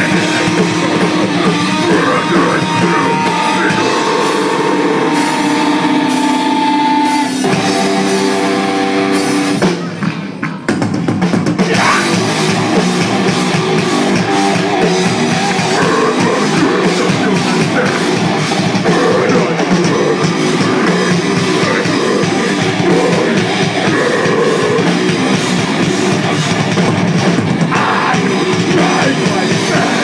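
Metalcore band playing live: distorted electric guitar and drum kit, with held guitar notes over the first few seconds and a brief drop-out about ten seconds in before the full band comes back in.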